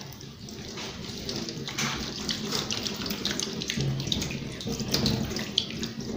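Tap water running into a stainless steel sink while hands are rubbed under the stream to rinse off soap, with irregular splashing.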